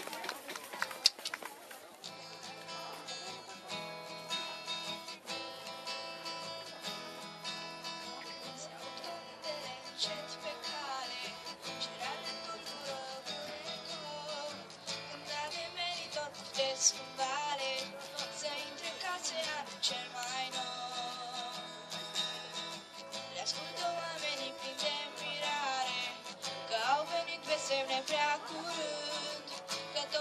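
Acoustic guitar playing the accompaniment to a Romanian carol (colind), with a young girl's singing voice joining in around the middle.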